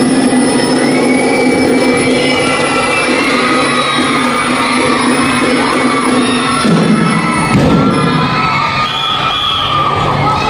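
Drum and lyre band music with a long held low note that steps down in pitch about two-thirds of the way through. It plays under a large crowd of children cheering and shouting.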